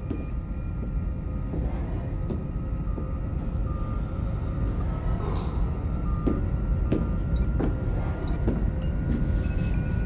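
Steady low rumble of a starship bridge's background hum, with faint electronic console tones and a few soft clicks near the end.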